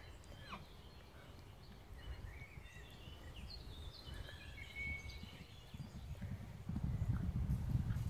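Birds chirping in short, quick calls through the middle. Under them runs a low, gusty rumble of wind on the microphone that grows louder near the end.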